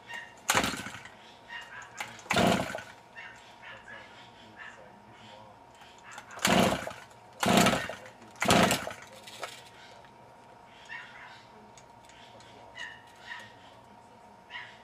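Recoil starter of a small two-stroke trimmer engine pulled five times, each pull a short whirring crank, two early and three close together in the middle; the engine never fires, taken for dead.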